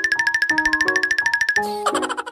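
Background music: a single high note repeated rapidly, about a dozen times a second, over held lower notes, with a short swish near the end.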